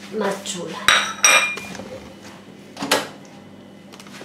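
China teacup and saucer clinking together as they are handled: two sharp clinks about a second in, the second ringing briefly, then another knock near the three-second mark.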